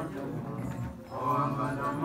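Mantra chanting by voice, in sustained phrases with a short break about a second in.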